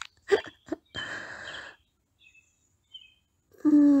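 A woman's short, hiccup-like giggles, then a brief rush of breathy noise, faint high bird chirps, and a long drawn-out 'oh' starting near the end.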